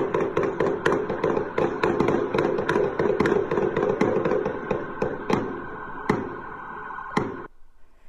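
A long, irregular volley of gunshots, about twenty in all, coming two to three a second and thinning out before they stop near the end, heard from a distance. A steady droning tone runs underneath the shots.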